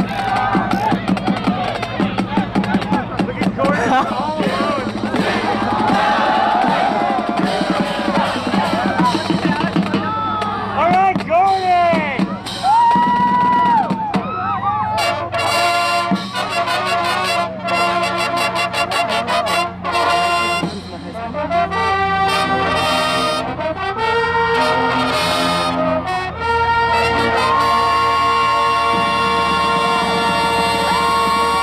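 Marching band brass and drumline playing held chords over a steady drum beat. This takes over about halfway through, after a stretch of voices cheering and shouting.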